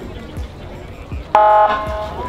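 Police motorcycle's siren unit giving a short, loud, steady-pitched blast about one and a half seconds in, set off by a press of its button.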